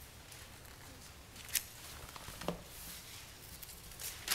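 Pages of a Bible being leafed through: faint paper rustling with two soft clicks about a second apart, over quiet room tone.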